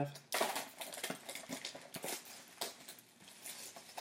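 Crinkling and rustling of a clear plastic trading-card pack wrapper as the cards are handled. A dense run of small crackles starts about a third of a second in and thins out over the next two seconds.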